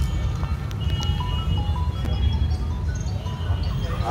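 A simple electronic melody of short, stepped beeping tones, like a jingle or ringtone, over a steady low rumble.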